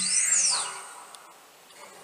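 A channel-logo sound effect: one whistling tone that glides up and then back down in pitch within the first second, then fades away.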